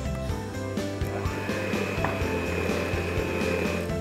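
Electric hand mixer running, its beaters whisking a runny egg-and-sugar batter as milk is poured in, with a steady high whine from about a second in. Background music plays under it.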